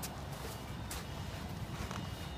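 Low, steady background noise with no distinct event, only a few faint soft knocks.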